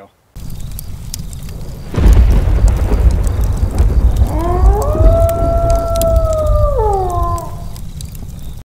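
Sound effects of steady rain, joined about two seconds in by a loud, deep rumble of thunder. In the second half a wolf howls once: it rises, holds one long note, then falls away.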